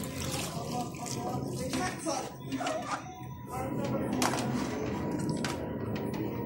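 Water sloshing and splashing in a plastic basin as a cup scoops it, with a few sharp knocks, under indistinct voices.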